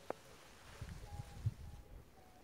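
Quiet outdoor background with a sharp click just after the start, then a few soft low thumps of footsteps and phone handling, and two faint short high tones near the middle.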